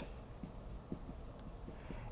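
Marker pen writing on a whiteboard: faint, short stroke sounds as letters are drawn.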